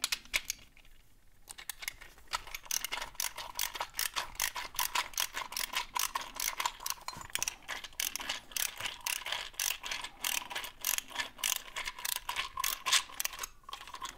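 Ratcheting nut driver clicking steadily as it loosens a bolt deep inside a brass padlock, about three to four pawl clicks a second, starting a second or two in.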